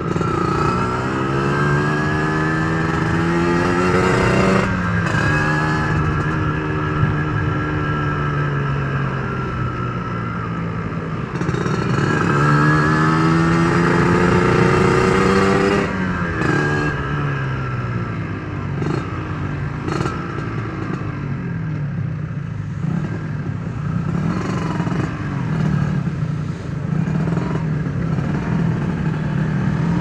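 Yamaha RXZ's two-stroke single-cylinder engine heard from the rider's seat while riding in traffic. It revs up twice, its pitch climbing as it accelerates, about a second in and again near the middle, the second time loudest. After that it runs more steadily and quietly at lower speed.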